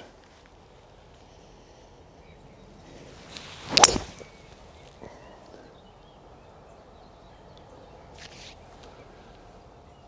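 A fairway wood swung at a golf ball: a brief swish into one sharp crack of impact about four seconds in, over faint outdoor background.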